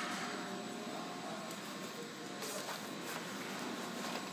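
Steady background hiss and hum with a few faint steady tones, and a few faint taps in the second half.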